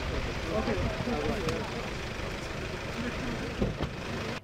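Voices of people talking around a car, over the low rumble of its engine, with a short thump near the end.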